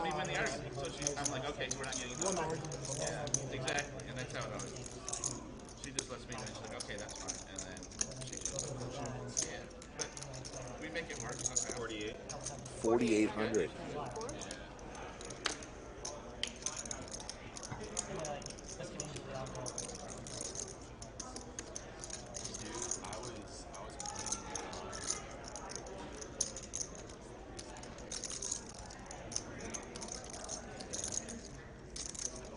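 Poker chips clicking and clattering over and over as players shuffle and handle their stacks at the table, with low voices in the background.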